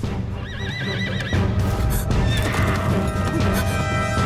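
A horse whinnies about half a second in: one quavering call lasting about a second, over dramatic background music.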